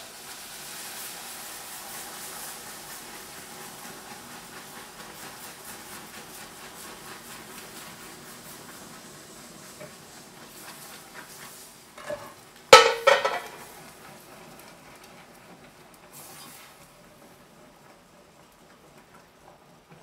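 Cream poured into hot caramel in a stainless steel saucepan, sizzling and bubbling while a wire whisk stirs it; the sizzle slowly dies down. A loud clatter against the pot about two-thirds of the way through.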